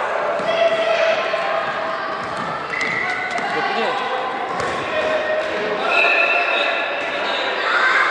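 Sounds of a youth indoor football game in a gym: children's voices calling out indistinctly over the thuds of the ball being kicked and bouncing on the wooden floor, with the echo of a large hall.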